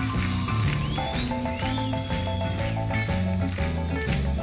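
Live country band playing an up-tempo instrumental: drums, bass, acoustic guitars and piano, with repeated chord stabs from about a second in and high notes sliding in pitch over the top.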